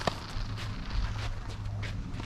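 Tennis rally on a clay court: a sharp racket-on-ball hit right at the start and a smaller hit about a second in, with shoes scuffing on the clay over a steady low wind rumble.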